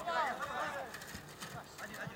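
Several people shouting over one another during a football match, loudest in the first second and then dying away.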